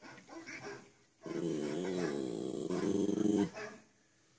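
A dog's growling moan that sounds like a Wookiee. A few short grunts come first, then, about a second in, one long call of some two seconds whose pitch dips and rises again.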